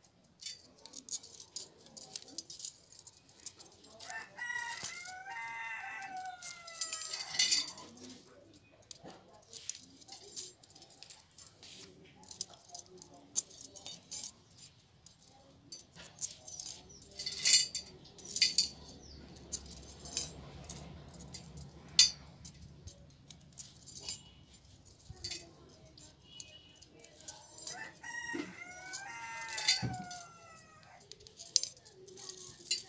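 Steel bicycle spokes clicking and jingling against the hub flange and each other as they are threaded into the hub, in irregular sharp ticks. A rooster crows twice, about four seconds in and again near the end.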